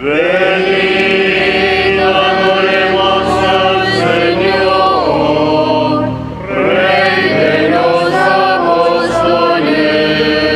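Choir singing a liturgical chant: long sustained sung phrases that begin at once, with a short break for breath about six seconds in before the next phrase.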